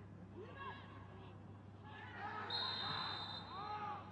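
Referee's whistle blown once, a single long steady shrill note starting about two and a half seconds in, most likely stopping play for a foul. Faint voices and a low hum run underneath, and the general noise swells as the whistle sounds.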